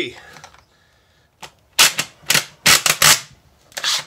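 Rifle cartridges being forced along a 3D-printed plastic AR-15 magazine loader into a magazine: a quick series of sharp clacks, about five in a second and a half, as the rounds go in.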